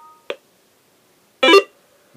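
Electronic beeps as a firmware upload to an X1M PRO transceiver finishes. Two steady tones sound together and end in a sharp click, then a louder, short chime comes about one and a half seconds in.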